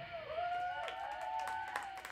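A small audience whooping and clapping at the end of a song: several overlapping rising-and-falling cheers, with scattered claps joining about a second in.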